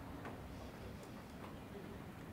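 Quiet room tone: a steady low hum with a few faint, irregular ticks.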